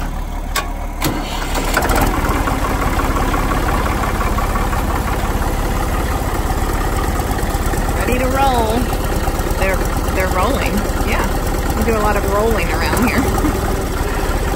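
New Holland 3930 tractor's three-cylinder diesel engine running with a fast, even clatter, growing louder about two seconds in as it picks up. A person's voice comes in over it in the second half.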